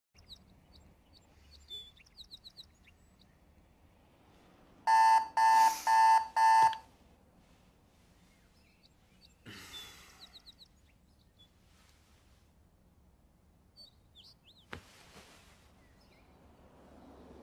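Digital alarm clock beeping: four loud electronic beeps in quick succession about five seconds in, with faint bird chirps around them. A soft rustle follows, then a sharp click near the end.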